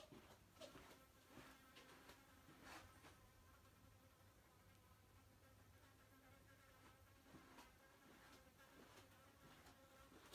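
Near silence: quiet room tone with a faint steady buzzing hum and a few soft knocks.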